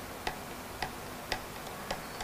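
Regular light ticking, about two ticks a second, over quiet room tone.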